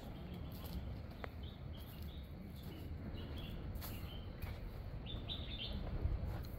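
Birds chirping, short high calls scattered through and coming in a quick cluster near the end, over a steady low outdoor rumble.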